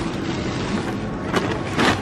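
Handling noise of shopping being gathered at a metal shopping cart: steady rustling and rattling, with two sharp knocks in the second half.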